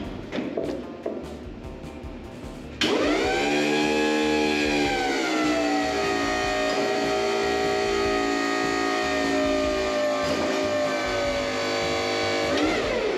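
Electric forklift's hydraulic pump motor cutting in about three seconds in and running with a steady whine while the forks lift an engine on a chain. Its pitch sags a little as the load comes on, then holds steady.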